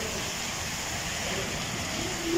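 Steady rain falling on a hard, wet courtyard floor, an even hiss of splashing drops.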